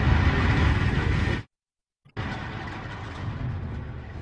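Deep rumbling sound-effect bed of a documentary soundtrack that cuts off abruptly to silence about one and a half seconds in, then returns, quieter, just after two seconds.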